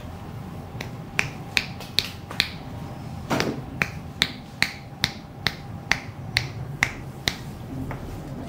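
Fingers snapping in a steady rhythm, about two or three sharp snaps a second, starting about a second in, with a brief gap near the middle.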